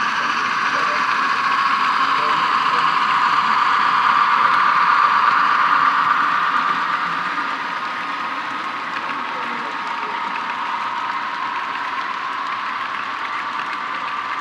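HO-scale model freight train rolling past, the steady running noise of its metal wheels on the track, loudest about five seconds in and then a little quieter as the cars go by.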